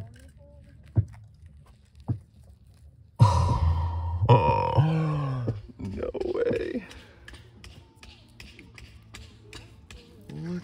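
A few light knocks as a Herkimer diamond quartz crystal is pried from the dirt. Then, from about three seconds in, a man's loud, drawn-out wordless vocal sounds. Near the end come quick faint clicks and scratches of fingers handling the soil-crusted crystal.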